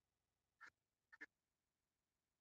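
Faint, brief squeaks of a marker pen on a whiteboard: one about half a second in, then two close together just past a second.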